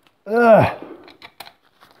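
A man's short voiced sound with a rise and fall in pitch, then a few light, sharp clicks from gloved hands fitting ground wires into a moped's wiring.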